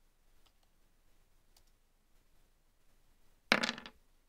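Dice rolled onto a table: a short, loud clatter about three and a half seconds in, over in under half a second.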